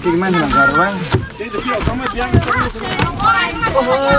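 Several people talking and calling out over one another, with a few short knocks among the voices.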